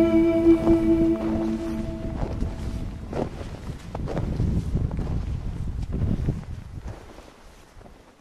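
A held musical chord fades out about two seconds in. After that, wind buffets the microphone of a handheld camera, with irregular scuffs and knocks from the moving camera and from steps on loose rock. The noise dies away toward the end.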